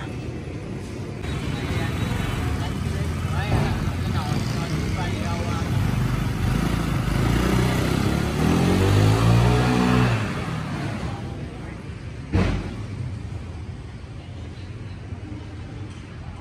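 Honda Vario 150 scooter's single-cylinder engine and CVT pulling away on a test run of its reworked clutch, rising in pitch as it accelerates. It is loudest around nine to ten seconds in, then fades. A sharp knock comes about twelve seconds in.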